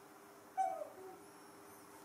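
A baby macaque gives one short, falling squeaky call about half a second in, followed by a fainter, lower call. A faint steady hum runs underneath.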